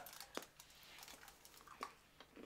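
Near silence: quiet room tone with two faint clicks, one shortly in and one near the end.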